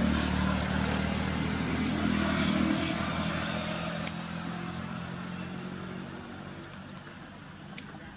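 A motor vehicle's engine running, loud at first and fading gradually over several seconds, as if passing and moving away.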